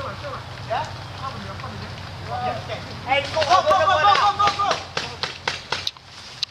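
Paintball game: shouted voices about halfway through, then a run of sharp pops from paintball markers firing near the end, over a steady low hum.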